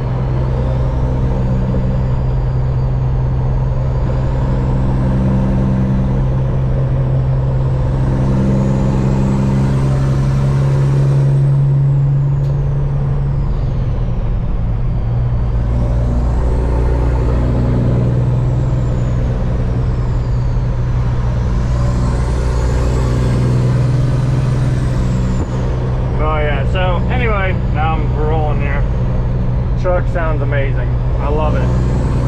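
Caterpillar diesel engine of a Peterbilt semi truck pulling down the highway, heard from inside the cab as a steady drone. A high whistle rises and falls several times over it. The engine's pitch shifts about halfway through.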